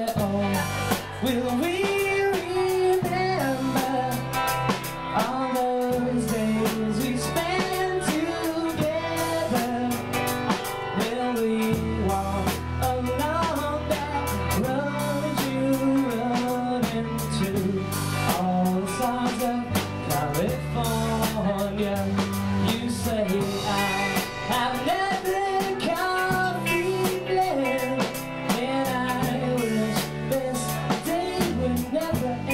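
Indie rock band playing a song live: drum kit keeping a steady beat, guitars, a low bass line changing note every second or two, and a sung lead vocal.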